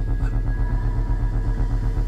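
Horror-film suspense score: a low, fast, even pulsing throb with faint held tones above it.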